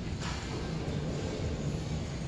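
Steady low rumble of a large airport terminal hall, with a brief hiss near the start.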